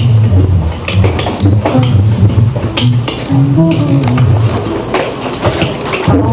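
Live vocal looping: a sung low bass line, repeated by a loop station, under sharp beatboxed percussion clicks in a steady groove.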